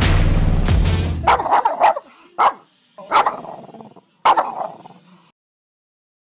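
Music cuts off about a second in, followed by a dog barking five or six times at irregular intervals, each bark trailing off in an echo.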